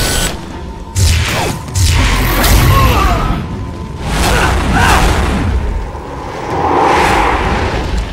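Cartoon action sound effects: energy-beam blasts, fire whooshes and booms, with several sudden loud hits over a deep rumble and background music.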